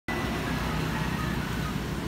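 Street traffic noise: a steady drone of passing motor traffic.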